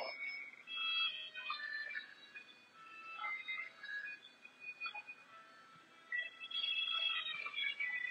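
Quiet elevator music, a melody of short high notes at changing pitches from the car's speaker, thinning out for a moment past the middle.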